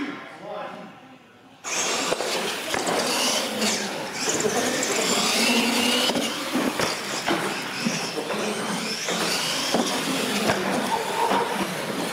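Radio-controlled monster trucks racing, their electric motors whining up in pitch over a dense noise of voices from onlookers. The loud noise comes in abruptly about two seconds in.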